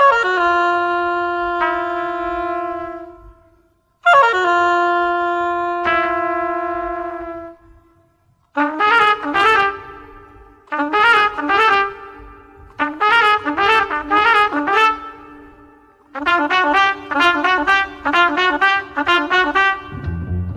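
Jazz-inflected film-score music on a lone brass instrument, most likely a trumpet: two long held notes, each sliding down into place and fading away, then four short, quick phrases separated by brief pauses.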